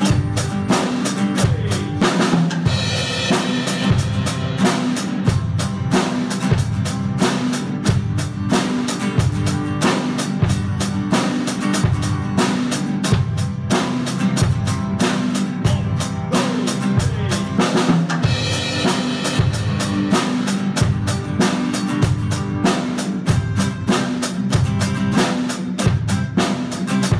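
Drum kit played in a steady, evenly driven beat of bass drum and snare strokes, with cymbal crashes about three seconds in and again about three-quarters of the way through, over a strummed acoustic guitar, as an improvised drums-and-guitar jam.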